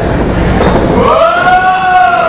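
A long drawn-out yell from a spectator, rising at first, held for over a second and then falling away, over the noise of the room as one wrestler is hoisted into a suplex.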